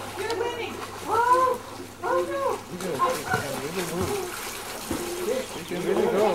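Children's voices calling out as they play in a swimming pool, with long drawn-out calls about one and two seconds in and some water splashing.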